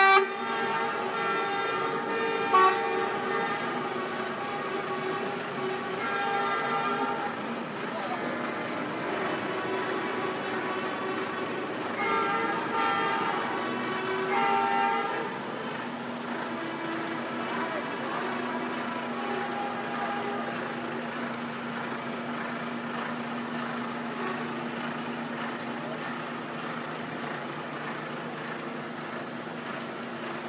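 Lorry horns honking in bursts, at the start, briefly about two and a half seconds in, and again for a few seconds around the middle, over the steady hum of idling truck engines and crowd chatter.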